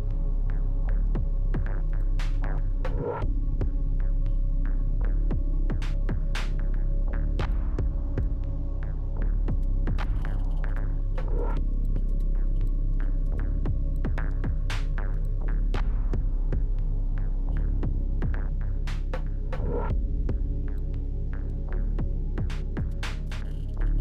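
A loud, steady electrical hum with a stack of steady tones, broken by many irregular clicks and crackles.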